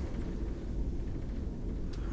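Low, steady rumble with no distinct events.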